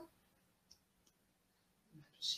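Near silence, with room tone and a single faint click about a third of the way in.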